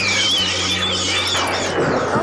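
Cartoon sound effect of a swarm of bats squealing, with a rapid flutter, over a low held music note. The squeals fade out about one and a half seconds in.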